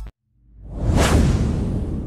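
Whoosh sound effect for a title-card transition. It swells in from silence about half a second in, peaks about a second in, then fades slowly with a deep low tail beneath.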